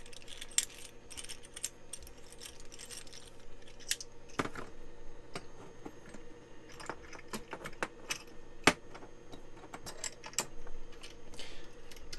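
Microphone being handled close up as its fallen stand mount is fiddled with: scattered clicks, rattles and knocks, one sharp knock near the end, over a steady low hum.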